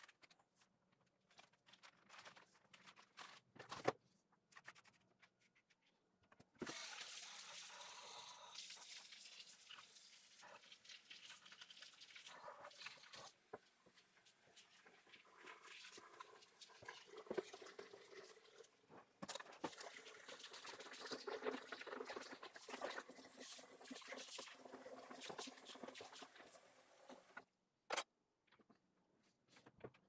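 Faint hiss and splash of water running into a plastic bucket of sugar for about twenty seconds, starting several seconds in and stopping shortly before the end, with a few faint knocks of the bucket being handled before it.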